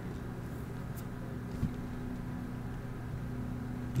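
Steady low background hum, with a faint click about a second in and a soft knock a little after.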